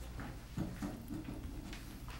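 Faint voices murmuring away from the microphones over a steady low room hum, with a few soft clicks.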